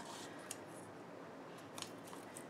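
Faint handling sounds of thin double-sided foam tape strips being pressed onto a paper card frame, with a small click about half a second in and a couple of light ticks near the end.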